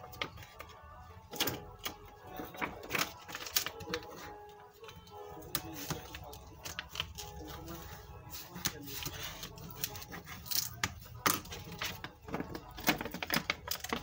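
Clear PVC sheet crackling and clicking as it is bent, folded and creased by hand along a score line, in sharp irregular clicks.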